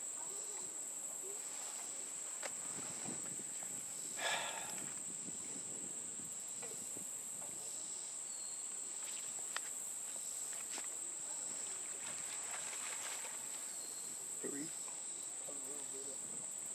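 Steady high-pitched insect drone, with a brief noise about four seconds in and a single faint click near the middle.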